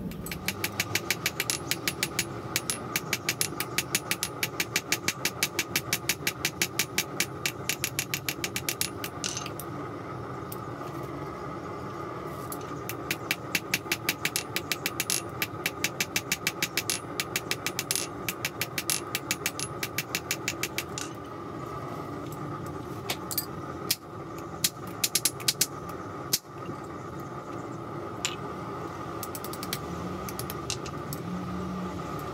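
Hand hammer striking red-hot tool steel on an anvil in fast, even runs of blows, about four a second, forging out a shear blade. Two long runs come in the first half, then a few separate strikes later on, over a steady machine hum.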